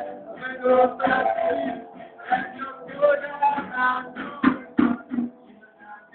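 A boy singing "la la" into a microphone with a live band of guitar and drum kit. There are two loud hits about four and a half seconds in.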